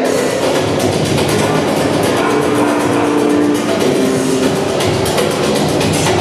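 Instrumental accompaniment music with a fast, busy beat and held notes, played over a hall's loudspeakers.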